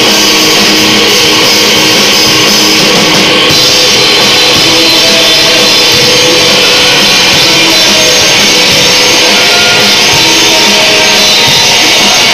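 Rock band playing loud at full volume: electric guitars and bass guitar with drums, a dense, unbroken wall of sound.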